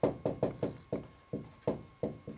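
Marker writing on a whiteboard: a quick, irregular run of short knocks and taps as the letters are stroked out, about eight in two seconds.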